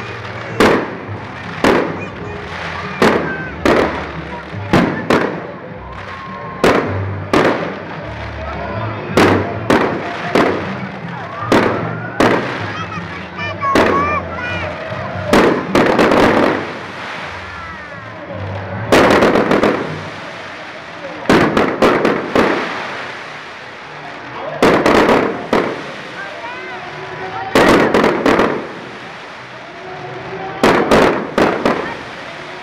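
Aerial fireworks going off in quick succession. Sharp bangs come about once a second at first, then give way to longer, denser clusters of bursts in the second half.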